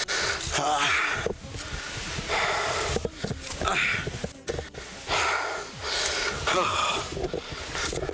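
A man breathing hard, panting in heavy breaths about once a second, out of breath from climbing a steep slope.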